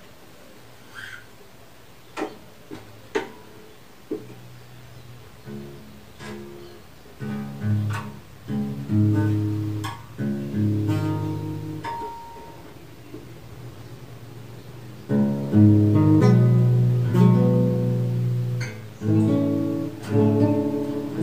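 Guitar being played: a few isolated plucked notes and taps at first, then chords from about five seconds in, growing into louder strummed chords near the end.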